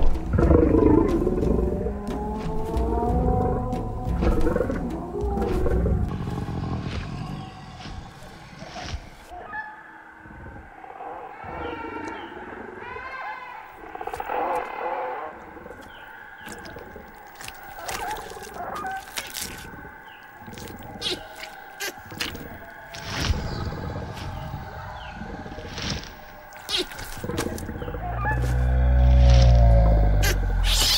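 Dinosaur calls and growls from a documentary soundtrack, gliding up and down in pitch over background music, with short high calls in the middle. A deep rumbling growl builds near the end.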